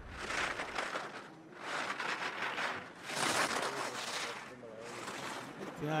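Alpine ski edges carving and scraping on hard-packed snow, a hissing rasp that swells with each turn, four turns about a second and a half apart.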